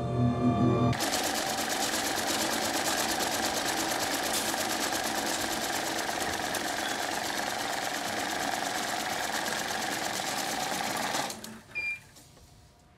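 A small machine running with a rapid, even mechanical clatter, a fast steady ticking held at one level for about ten seconds, that cuts off suddenly near the end. A short high beep follows.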